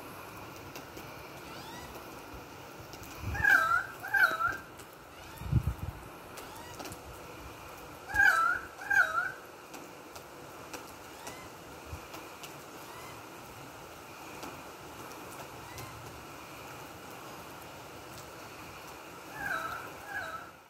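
Steady rain falling on a garden and swimming pool. An animal, most likely a bird, gives short calls in pairs, each dipping then rising in pitch, three times, with a low thump between the first two pairs.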